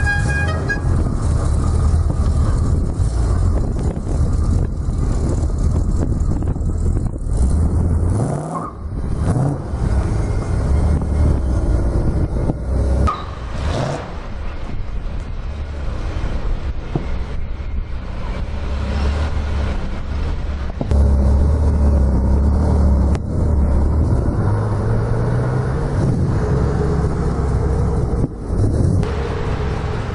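Engines of sports cars pulling away one after another at low speed, among them a Ferrari California and a Roush Ford Mustang. The engine note rises sharply in a quick rev about eight seconds in, and climbs again more gently around twenty-four seconds in.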